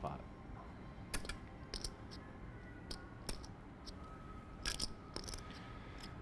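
Poker chips clicking together in a player's hand as he handles and riffles them, a scattered run of short, sharp clicks.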